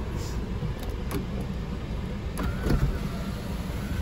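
Steady cabin hum of the 2003 Pontiac Vibe's idling four-cylinder engine and running climate fan. About two and a half seconds in, the electric moonroof motor starts with a faint whine as the moonroof slides open.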